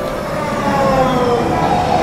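Metro train running, its whine falling slowly in pitch over a steady rumble, as an electric train does when slowing.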